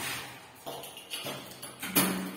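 The echoing tail of a door slam fading away in a tiled stairwell, then a handful of light footsteps and taps on the tile floor, each with a short echo.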